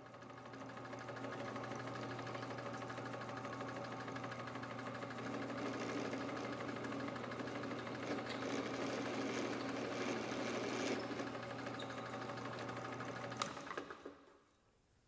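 Benchtop drill press running steadily, its bit boring through the metal wing strut and its attach fitting: a constant motor hum, with a rougher cutting sound building through the middle of the stretch and a single click near the end.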